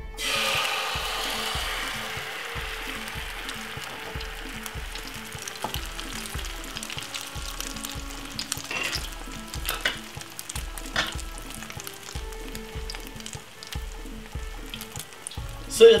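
Beaten egg hitting hot oil in a non-stick frying pan: a sudden loud sizzle as it is poured in, easing into a steady sizzle with scattered crackles as the egg sets.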